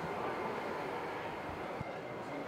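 Steady background hubbub of a large hall, with a couple of soft thumps near the end.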